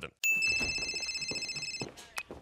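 Mobile phone ringing: one electronic ring, a steady high trill that starts just after the beginning and cuts off after about a second and a half.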